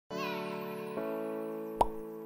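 Intro jingle music: held chords that change about a second in, with a short, sharp pop sound effect near the end.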